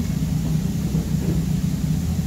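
A steady low rumbling hum, even in level throughout, with no distinct events standing out.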